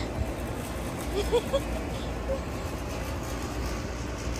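Outdoor background noise: a steady low rumble, with faint snatches of distant voices about a second in.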